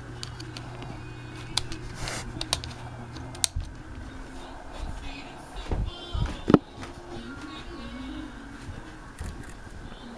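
An electric fan's steady low motor hum that stops about three and a half seconds in, followed by handling noise and footsteps with a sharp knock a few seconds later.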